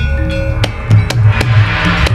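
Javanese gamelan playing kuda lumping accompaniment: bronze metallophones and gong-chimes struck in quick succession, ringing over low drum strokes. A hissing wash swells up near the end.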